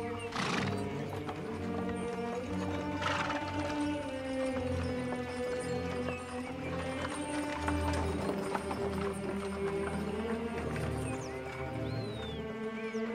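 Hooves of two draft horses clopping on a dirt track as they pull a hay wagon, under film music of long held notes. Two short noisy bursts come about half a second and three seconds in.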